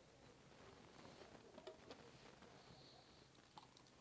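Near silence: room tone with a few faint, small clicks of glassware and garnish being handled on a tabletop.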